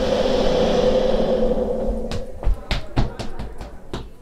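Sound-effect swell with a steady hum, the audio drama's transition cue as a memory playback starts, fading after about two seconds. It is followed by a run of irregular knocks and clatter.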